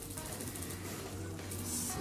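Faint background music with a low steady hum beneath it, and a short soft hiss near the end.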